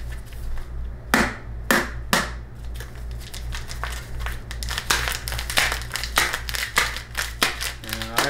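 A 4 oz bag of Bones Coffee ground coffee crinkling and crackling as it is handled and opened. Two sharp crackles come near the start, followed by a dense run of crinkling to the end.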